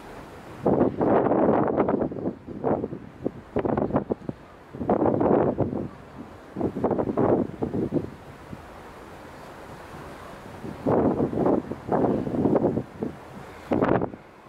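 Wind buffeting the microphone in irregular gusts, several loud bursts of rumbling noise a second or so long. Between them is a steady low background.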